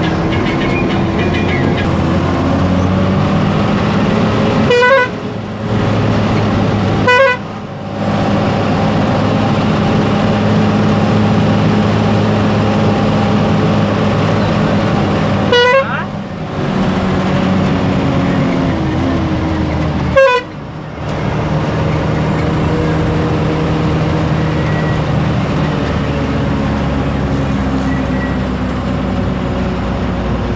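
Vehicle engine running steadily under load while driving uphill, heard from inside the cabin. Its sound drops off briefly four times.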